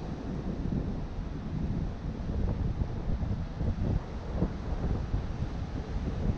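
Wind buffeting the camera microphone on an open beach, a gusting low rumble that rises and falls throughout.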